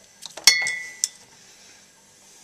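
Glass bottles clinking against each other on a minibar fridge door shelf: a few light taps, then one sharp clink about half a second in that rings on briefly, and a lighter tick about a second in.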